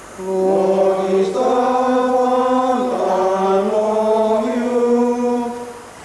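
A slow sung chant of long-held notes, each sustained for a second or more, with the pitch stepping up and then gliding back down; it fades away near the end.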